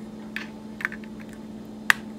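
USB-B cable plug being handled and pushed into the USB socket of an MKS Gen L 3D-printer control board: a few light clicks, then one sharp click near the end as the plug seats. A steady low hum runs underneath.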